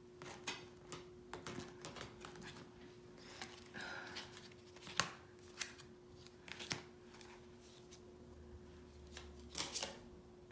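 Paper tarot cards being sorted back into order by hand: cards sliding and tapping against each other, with scattered sharp clicks and snaps, the sharpest about halfway through and a short cluster near the end.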